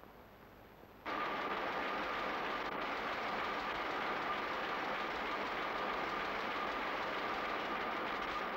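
Newspaper printing press running, a steady machine noise with a constant whine that starts abruptly about a second in.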